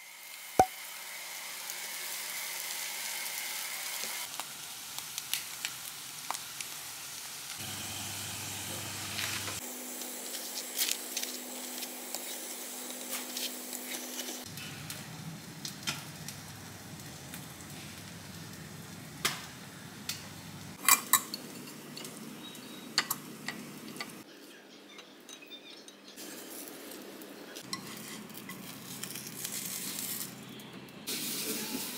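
Food frying and sizzling in a nonstick frying pan, with scattered clicks and clinks of a spatula and chopsticks against the pan and plates. A low hum comes and goes underneath.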